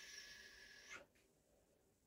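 Faint hiss of a paint brush's bristles dragging oil paint across canvas for about a second, then near silence.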